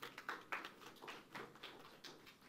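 Sparse, light applause from a few people: about ten irregular, faint claps.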